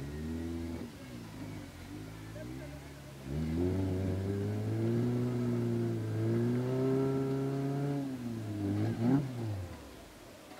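Off-road 4x4 engine revving: it climbs about three seconds in, holds high revs for several seconds with a short dip, then drops back near the end.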